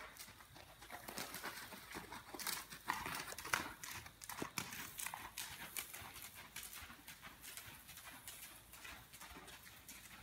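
A horse's hooves striking soft sand arena footing in quick, irregular hoofbeats. They are loudest about three to four and a half seconds in, then grow fainter as the horse moves away.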